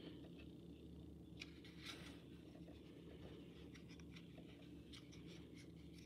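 Faint sliding and flicking of glossy 2021 Prestige football trading cards as they are moved through a stack in the hand, a few soft swishes over a low steady hum.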